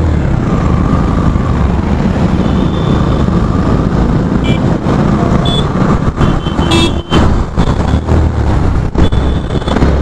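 Yamaha FZ-V3's 150 cc single-cylinder engine running as the motorcycle moves off and rides on through traffic, under a heavy low rumble of wind on the helmet-mounted microphone.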